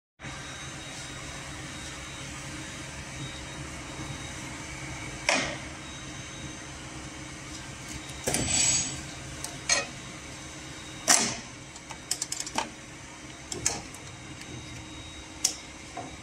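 Steady hum of an idling automatic pattern sewing machine and workshop, broken by scattered sharp clicks and knocks as strap webbing and a metal ratchet buckle are set into the sewing clamp. A short noisy hiss comes about halfway through. No stitching is heard.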